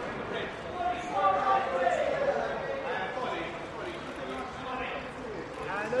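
Several voices talking and calling out over each other: photographers shouting directions to the person they are photographing.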